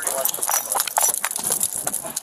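Scuffle heard through a body-worn camera: rapid, irregular rustling of clothing against the camera, with knocks and shoes scuffing on asphalt as two men grapple.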